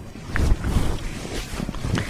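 Rustling and rubbing of a cotton saree as it is handled and spread out on a counter, starting about half a second in.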